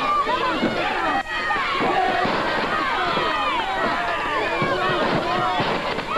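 Crowd of wrestling spectators yelling and shouting over one another, many voices at once with no single clear speaker.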